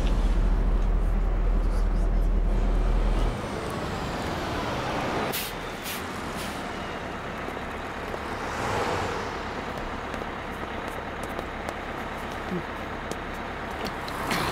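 City bus interior: the engine runs with a steady low rumble that drops away about three seconds in as the bus slows. A couple of sharp clicks follow, then a hiss of air from the bus's pneumatics swells and fades near the middle.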